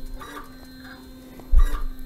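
Grundfos DDA smart digital dosing pump running after start-up: a steady motor hum with soft, repeated clicks of its strokes, and one heavier thump about one and a half seconds in. It is dosing normally with good system pressure.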